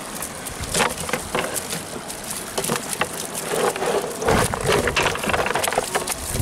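Live whiteleg prawns and a mesh net being emptied into a plastic crate: scattered sharp clicks and crackles of prawns flicking against the plastic and each other, with a louder stretch of rustling and a low thump a little past halfway.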